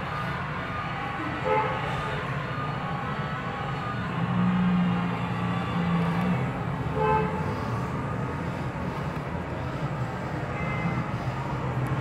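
A steady low hum, with a held horn-like tone from about four to six seconds in and two short, sharper sounds, one near the start and one about seven seconds in.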